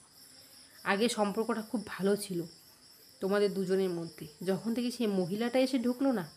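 Steady, high-pitched chirring of insects runs unbroken underneath, with a woman talking in Bengali over it, her voice the loudest sound.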